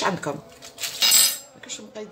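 Aluminium foil wrapper crinkling as a processed cheese portion is unwrapped, in a short burst about a second in.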